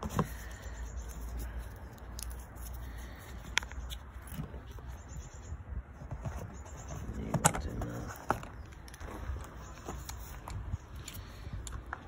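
A few sharp clicks and taps from handling a spark plug and its cardboard packaging, the loudest about seven and a half seconds in, over a low steady rumble.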